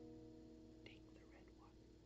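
The last strummed chord on a steel-string acoustic guitar rings out and fades almost to silence. A faint, brief vocal noise comes about a second in.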